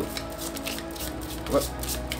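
A deck of tarot cards being shuffled by hand, faint light clicks of card on card, over steady background music with held notes.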